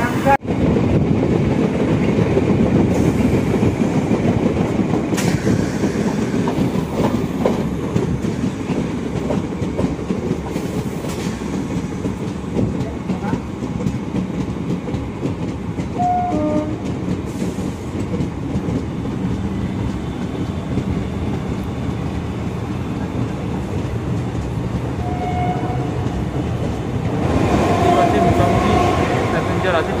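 Suburban EMU local train running along the track, the wheels and carriages rattling in a steady, loud rush, heard from the open doorway of a coach. A few brief tones break in about halfway and again near the end.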